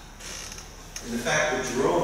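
A man's lecturing voice, starting again about a second in after a brief pause.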